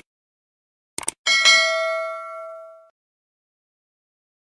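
Notification-bell sound effect: two quick clicks about a second in, then a bright bell ding that rings and fades out over about a second and a half.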